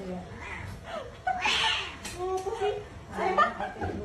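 People talking and chuckling, in bursts throughout.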